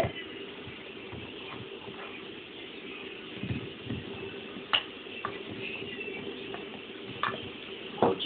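A few sharp clicks and scrapes of dogs' teeth on elk antler, mostly in the second half, over a steady low hum and faint television background.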